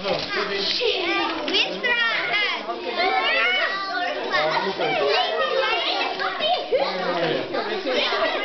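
A group of children talking and calling out over one another, many high voices overlapping without a break.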